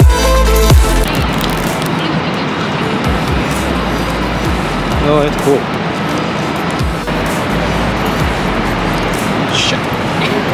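Electronic dance music with heavy bass ends about a second in, giving way to steady, loud city street noise with low traffic rumble. A brief voice comes in near the middle.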